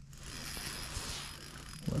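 Spinning reel's drag buzzing steadily as a hooked fish pulls line off it.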